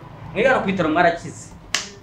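A person's voice for about a second, then a single sharp snap near the end.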